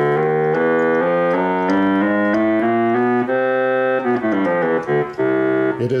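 Hammond Solovox, a 1940s vacuum-tube monophonic keyboard, playing a run of single notes one after another, each with a reedy, overtone-rich tone, with a brief bend in pitch about four seconds in. The instrument has just been retuned by trimming the capacitors in its tuned oscillator circuit, and it is dead in tune.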